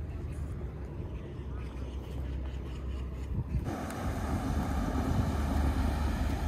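Wind rumbling on the microphone. About two-thirds of the way in, it cuts suddenly to a louder rush of wind and water, with a small motorboat running across the harbour.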